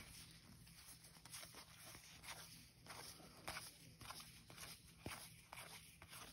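Faint, irregular soft flicks and rustles of a stack of baseball cards being thumbed through by hand, card sliding over card, over a steady low hum.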